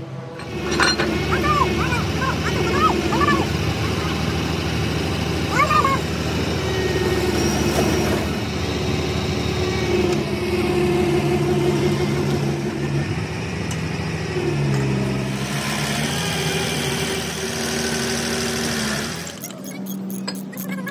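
A heavy-equipment diesel engine running steadily, its pitch shifting a little now and then. A few short high squeaks come in the first few seconds and again about six seconds in.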